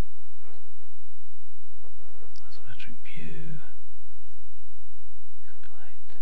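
Soft, half-whispered speech about two to three and a half seconds in, with a few faint clicks of a computer mouse as menus are opened, over a steady low hum.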